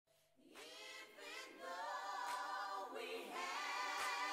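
Voices singing together without instruments, starting about half a second in and swelling in loudness.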